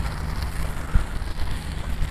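Wind buffeting the microphone, a fluctuating low rumble, with one soft knock about halfway through.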